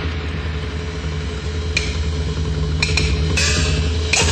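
Dramatic background music: a steady low drum rumble with sharp percussion strokes about two seconds in and again toward the end.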